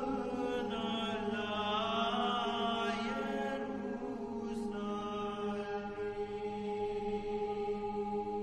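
A vocal ensemble singing a traditional Romanian colindă (Christmas carol), with a low note held steadily under a moving melody.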